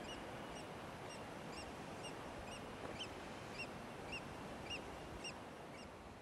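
A bird calling: a faint, short, high chirp repeated evenly about twice a second, over a steady background hiss.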